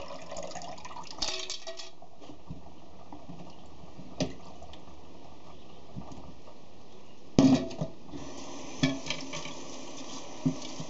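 Water running and splashing in a stainless steel kitchen sink as dyed quills are rinsed, with a few sharp metal knocks of a pot, slotted spoon and strainer against the sink, the loudest a clatter about seven seconds in.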